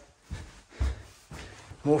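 Footsteps on carpeted stairs, dull low knocks about two a second, as someone climbs quickly; a spoken word comes in near the end.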